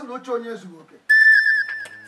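A brief voice in the first second, then a loud, high whistle-like tone that comes in suddenly about a second in and is held steady with a slight waver, part of the film's background score.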